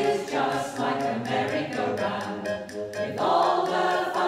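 Mixed community choir of men's and women's voices singing together.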